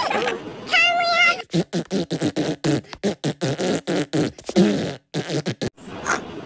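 Cartoon fart sound effects: a warbling tone about a second in, then a rapid run of short sputtering blasts, pausing briefly near the end.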